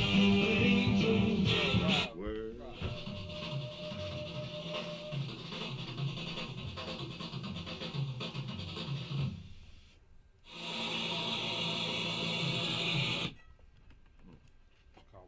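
Excerpts of recorded music played back one after another. The music changes abruptly about two seconds in, dies away around nine to ten seconds, then a louder excerpt starts and cuts off sharply shortly before the end.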